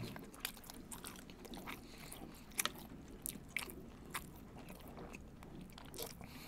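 A person chewing a mouthful of food close to the microphone, with a scatter of small, irregular mouth clicks and smacks.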